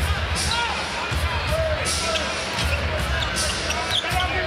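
Basketball bouncing on a hardwood court, a few dribbles at irregular intervals, over the steady hubbub of an arena crowd with faint music and voices.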